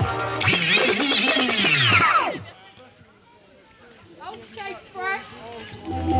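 The hip-hop beat cuts out and a loud sweep of many pitches falls away over about two seconds, then a few seconds of scattered young voices from the crowd.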